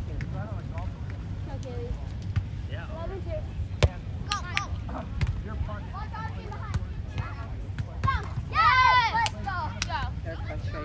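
Beach volleyball being played: a sharp slap of a hand on the ball about four seconds in, then a few lighter hits, over a low steady rumble of wind and distant voices. A high-pitched shout comes near the end.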